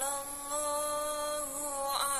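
Singing: a single voice holds one long, slightly wavering note that dips a little in pitch near the end.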